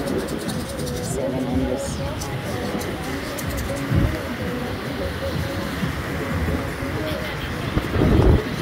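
Beach ambience: a steady wash of surf and wind noise, with distant voices and faint music. Two brief low thumps on the microphone, about four seconds in and at the end.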